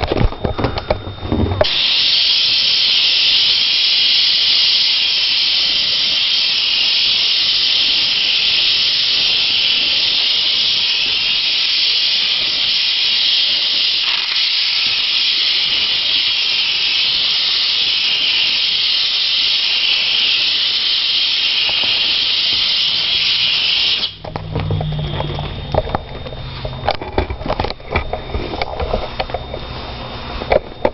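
Handheld steam cleaner jetting steam onto a wooden floor: a steady, loud hiss that starts about two seconds in and cuts off suddenly about twenty seconds later. Irregular rubbing and knocks follow near the end.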